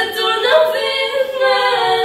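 Voices singing a cappella, long held notes that slide and bend in pitch, with several voices overlapping.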